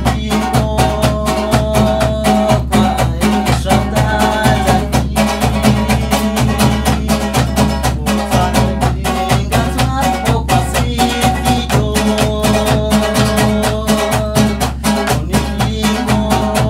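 Live folk music: an acoustic guitar with a double-headed drum keeping a steady, quick beat and a melody running over it.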